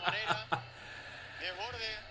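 A man's laughter tailing off in the first half-second, then faint steady background noise and a short rising vocal sound near the end.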